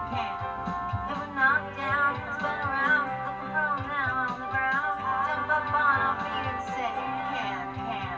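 Upbeat, bouncy song playing, with a high melody line wavering over a bass part.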